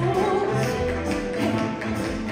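Tap shoes clicking on a stage floor in quick, uneven strikes as a dancer taps, over loud backing music.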